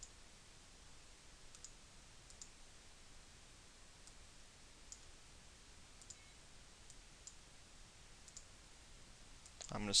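Faint computer mouse clicks, about eight single clicks spaced a second or so apart, over a quiet background hiss.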